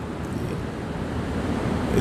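Steady rushing background noise, fairly loud, growing slightly louder, with no speech.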